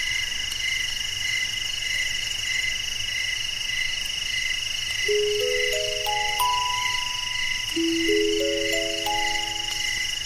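Crickets chirping in a steady, pulsing chorus. About halfway through, a music box joins with two rising runs of ringing notes.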